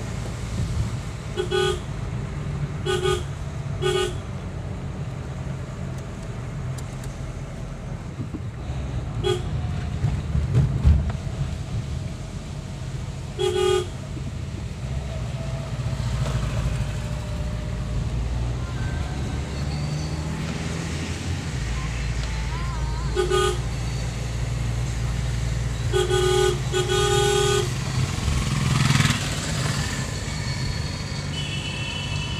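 A car horn sounding in short beeps, about eight times, over the steady rumble of a car's engine and tyres heard from inside the moving car.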